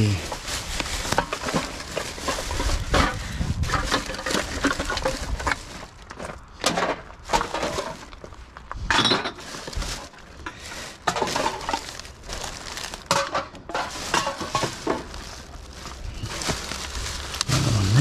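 A black plastic rubbish bag rustling and crinkling as hands rummage through it in a plastic wheelie bin. Cans and bottles clink and knock irregularly among the rubbish.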